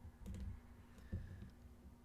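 A few faint clicks over a low steady hum.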